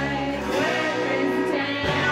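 Live rock band playing loud electric guitars and drums, with women singing.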